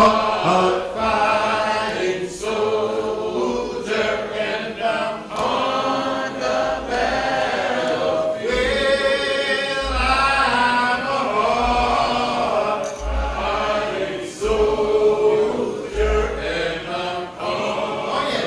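Choir singing a gospel song, several voices together, with low bass notes pulsing underneath from about six seconds in.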